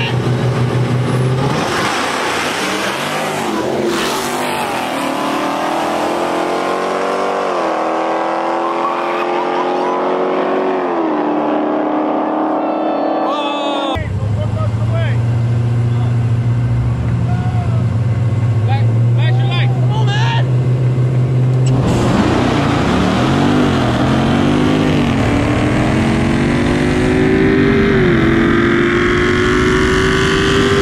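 Dodge Charger V8s idling, then launching at full throttle, the engine pitch climbing and dropping back at each upshift. After an abrupt cut the engines idle again, and a few seconds later another hard full-throttle acceleration with upshifts begins.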